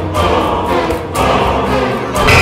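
Dramatic trailer score: a choir singing over sustained orchestral backing, thinning out about halfway through.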